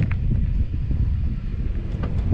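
Low rumble of an off-road vehicle creeping in reverse at low speed, mixed with wind buffeting the microphone.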